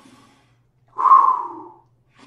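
A man taking a deep breath: a faint in-breath at the start, then a loud breath out about a second in, lasting just under a second and trailing off.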